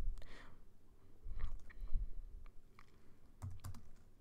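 Computer keyboard keys being typed: a handful of scattered, irregular keystroke clicks.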